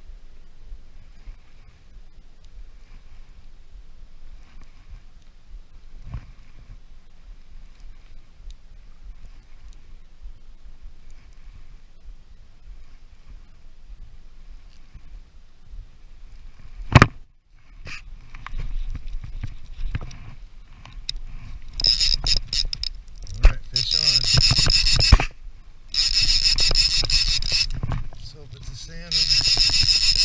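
Conventional fishing reel cranked in repeated one- to two-second bursts with its clicker engaged, a loud rasping ratchet sound that grows louder toward the end. It starts after a low steady rumble and a single sharp click a little past halfway.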